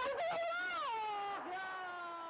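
A football commentator's long, drawn-out cry of 'laaa' ('no!') in dismay at a missed chance. It comes as two held cries, the second slowly falling in pitch and fading.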